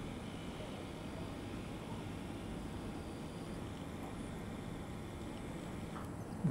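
Steady, faint noise of surgical equipment during ear microsurgery, an even hiss and hum with no distinct strokes or tones.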